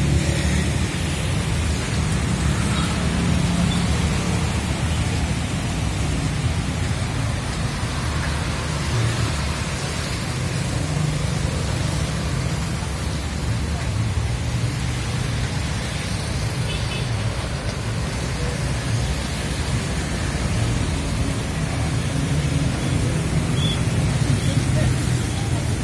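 Steady roadside traffic noise: motorbikes and cars passing on a wet road, with a continuous low rumble and hiss.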